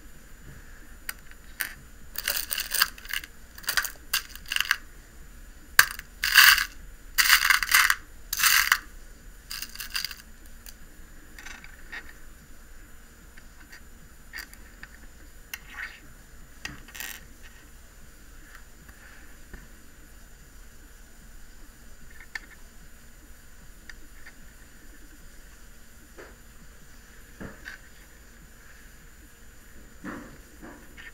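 Glass beads clicking and rattling against each other and the plastic of a bead box as they are picked through by hand: a run of busy rattles over the first several seconds, then scattered single clicks.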